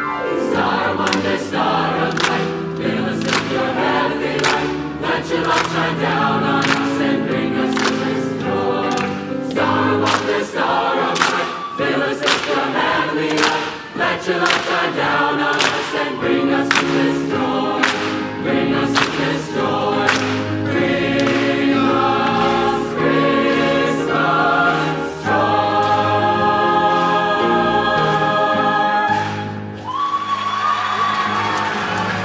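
Mixed choir singing an upbeat piece in harmony over a steady percussive beat. Over the last few seconds the choir holds a long sustained chord.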